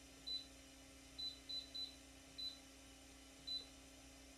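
Six short, high electronic beeps at uneven spacing, the key-press beeps of a karaoke machine's keypad as buttons are pressed, over a faint steady electrical hum.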